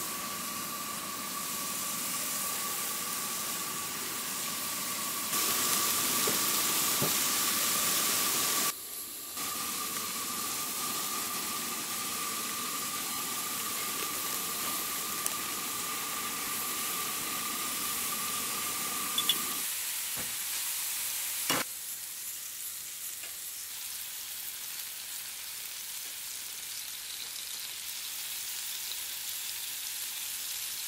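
Beef burger patties frying on a griddle over a propane camp stove, a steady sizzle with a thin high tone running under it for most of the first twenty seconds. A single sharp click comes about twenty-one seconds in, and the sizzle is quieter after that.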